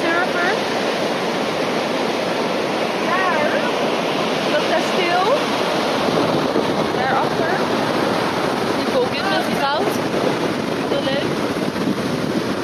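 Ocean surf breaking on a beach, a steady wash of waves, with wind on the microphone and scattered short voice calls over it.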